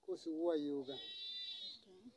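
A man's voice, then a high, held bleat from a farm animal about a second in, lasting under a second.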